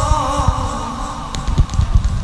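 A man's voice reciting the Quran in melodic style, holding one long wavering note that fades out about a second in, with low thuds and rumble beneath.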